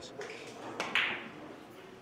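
Cue tip striking the cue ball in a hard three-cushion billiards shot: sharp clicks close together about a second in, the loudest sound here.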